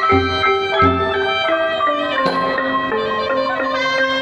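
Cambodian pinpeat ensemble playing: quick, ringing notes on the roneat xylophone and kong vong gong circles, with a sralai reed pipe sustaining a line over them. A few low drum strokes land early in the passage, near one second in and again a little past two seconds.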